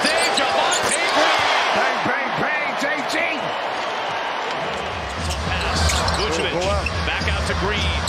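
Basketball arena crowd noise with sneakers squeaking on the hardwood court and a basketball bouncing. A low rumble comes in about five seconds in.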